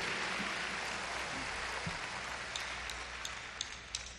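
Audience applauding, slowly dying down, with a few sharp clicks near the end.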